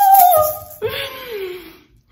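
A woman's playful wordless vocal, a high held "ooh" that slides down in pitch and fades out near the end, with a hand shaker rattling briefly at the start.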